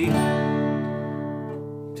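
Steel-string acoustic guitar: one strummed D chord at the start, left to ring and slowly fade.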